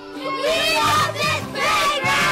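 A group of children shouting together in two drawn-out, wavering cries, the second starting about a second and a half in.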